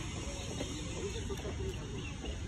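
Faint, distant voices over a steady low rumble of wind on the microphone, with two faint ticks about midway through.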